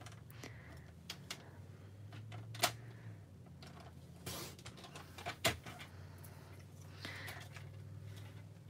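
Paper trimmer cutting cardstock: the blade carriage slides along the rail, faint, with a few short clicks and swishes.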